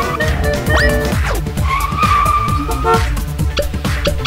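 Animated intro theme music with a fast beat, overlaid with quick swooping sound effects about a second in and a held screech in the middle, like a cartoon tyre squeal.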